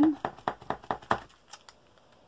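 Pump-action glue pen tip tapped rapidly up and down on paper, a quick run of light taps about eight to ten a second that fades out after a second or so. The pumping primes the pen, drawing glue down into the tip.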